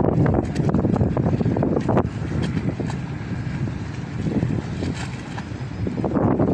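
Wind buffeting the microphone, a gusting low rumble that is strongest for the first two seconds and then eases off.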